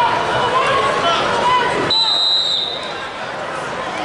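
Spectators shouting and chattering, then about two seconds in a referee's whistle gives one high, steady blast of about a second, and the crowd noise falls away.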